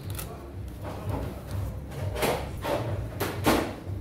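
Kitchen background: a steady low hum, with a few short clattering handling noises in the second half.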